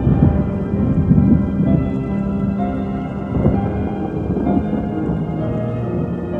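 Held synthesizer keyboard chords of a melodic black metal intro, under a thunder-and-rain sound effect whose low rumble is loudest in the first second and a half and swells again about three and a half seconds in.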